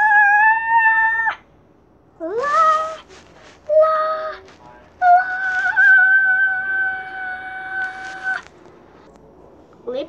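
A person singing high, drawn-out wordless notes in a squeaky play voice, with a rising swoop near the start and one long held note from about five seconds in to past eight seconds.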